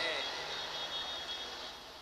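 The preacher's amplified voice dying away through the public-address loudspeakers as a fading echo, sinking over about two seconds to a faint hiss with a thin high tone.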